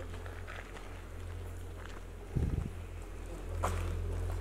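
Footsteps on concrete and grit, with a steady low rumble underneath and one low thump just past the middle.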